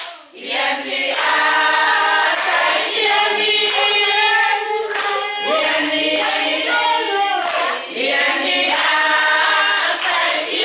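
A group of women singing a song together in unison, with hand clapping. The singing drops away briefly just at the start, then carries on.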